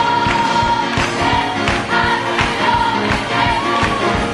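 Gospel choir singing full-voiced with a band, held sung notes over a steady beat.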